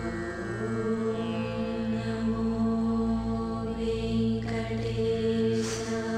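Devotional music for a film's opening logo: a chanted mantra over steady, sustained drone tones.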